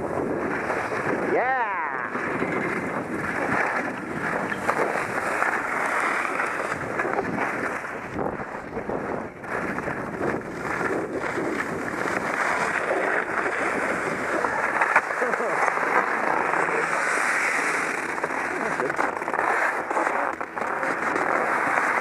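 Skis sliding and scraping over snow, a steady rushing noise mixed with wind on the microphone.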